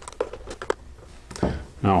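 A scattering of small, sharp clicks and taps from hands and a screwdriver working on the plastic back of a FrSky Horus X12S radio transmitter as its case screws are undone.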